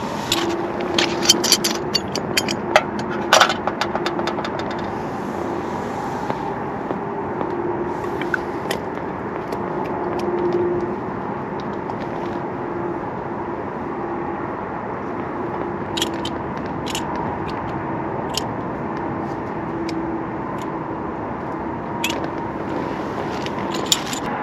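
A steady hiss from a flameless heating pack reacting with water under a food container. Small clicks and rattles of handled items come in the first few seconds, with a few sharp ticks later on.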